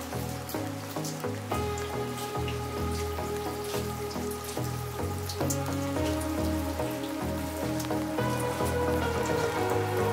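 Soft background music with held tones over a slowly stepping bass, laid over light rain with scattered individual drops.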